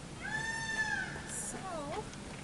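A long, high-pitched meow-like call that falls away at its end, followed by a shorter wavering call that dips and rises again.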